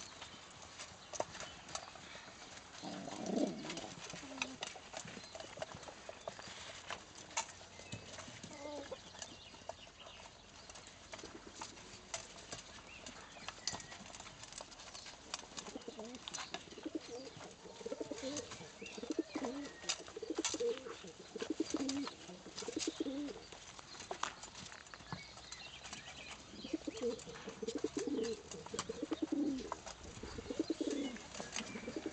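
Domestic pigeons cooing, more often in the second half, over a steady scatter of sharp clicks from beaks pecking at scattered food in straw bedding.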